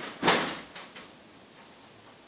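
A short scraping clatter followed by a few light clicks, from metal parts of a round baler's pickup being handled during a tooth and guard repair.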